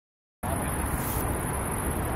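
Steady outdoor background noise, a low rumble under a constant high hiss, that starts abruptly about half a second in after silence.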